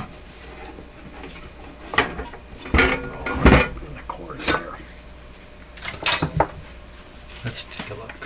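Metal knocks and clanks from a signal generator's metal front panel and chassis being handled and set down on a workbench: about half a dozen separate knocks spread over several seconds.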